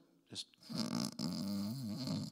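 A man imitating a snore: one drawn-out, rough snore starting about half a second in and lasting about a second and a half.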